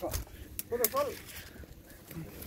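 A brief voiced call about a second in, with a few sharp knocks and rustles of movement through undergrowth around it.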